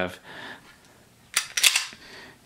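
Unloaded Smith & Wesson Model 39-2 9 mm pistol being worked by hand: a single sharp metallic click a little past halfway, then a short clatter of clicks from the action.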